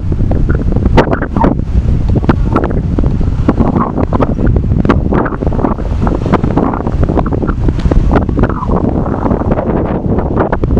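Wind buffeting the camera's microphone: a loud, uneven low rumble with frequent short pops.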